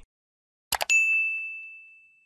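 Two quick mouse-click sound effects, then a single high notification ding that rings out and fades over about a second: the sound effect of a subscribe button being clicked and the notification bell switching on.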